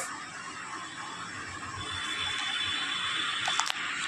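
Steady background hiss of room tone, rising slightly in the second half, with a faint high tone through the middle and two small clicks near the end.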